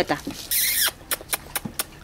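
A Spanish water dog puppy gives one short, high-pitched squeal, followed by a run of light, quick clicks.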